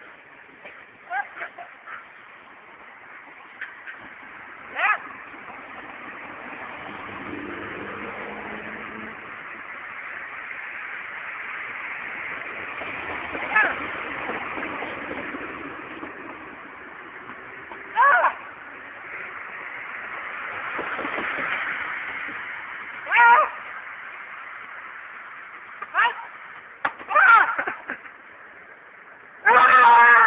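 Brief voice sounds every few seconds over a steady background noise that swells through the middle and then fades.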